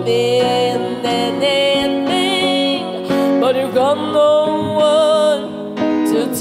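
A young woman singing a slow song live into a microphone, her voice gliding and wavering between held notes, backed by a band with electric guitar and drums.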